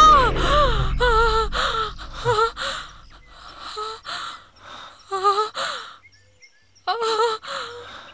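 A wounded woman gasping and moaning in pain: a run of short, breathy cries with wavering pitch, broken by brief pauses, with a short lull about six seconds in.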